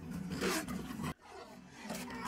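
A wolf snarling in an animated film's soundtrack, cut off suddenly about a second in.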